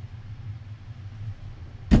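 A low steady hum, then near the end a single sharp thump as an airsoft pistol is dropped to the floor.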